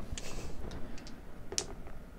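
A few light clicks and taps of dice being rolled onto a game mat for an armour roll in a tabletop miniatures game.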